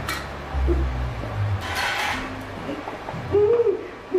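Live dangdut band playing: held bass notes, a cymbal crash about two seconds in, and short sliding melodic notes near the end.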